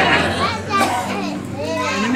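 Several voices at once in a room of guests: chatter and laughter overlapping, with some high-pitched voices among them.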